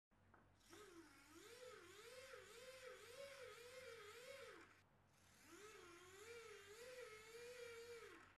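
Small hobby servo's plastic gear train spun by hand and driven as a generator, giving a faint whine whose pitch rises and falls with the hand's turning. It stops briefly near the middle, then starts again.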